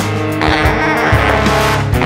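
A large jazz ensemble playing loud, dense big-band music: saxophones and brass over electric bass and drums.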